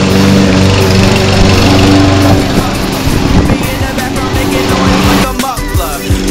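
Hip-hop backing track with a steady beat and sustained bass and synth notes. It briefly drops out just before the end.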